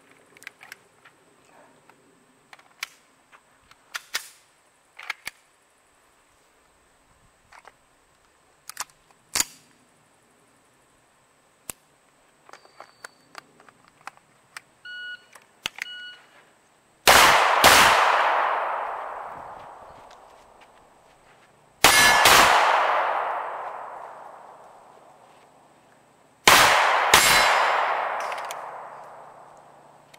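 A shot timer gives two short beeps. About a second later a pistol fires three quick pairs of shots (double taps), roughly five seconds apart, and each pair rings out and fades over several seconds.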